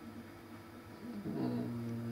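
A man humming a low, closed-mouth "mmm" while thinking. It starts about a second in, dips slightly in pitch, then holds steady. Before it there is only faint room hum.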